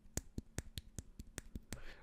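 A finger lightly and rapidly tapping the spring-loaded bone conduction driver from a Pula Anvil in-ear monitor, about five faint, sharp clicks a second. Only the tapping is heard, not the driver's spring.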